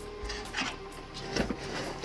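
Handling noise with a few short clicks and knocks as a 12-volt cigarette-lighter plug is pushed into its socket to power an LED light fixture.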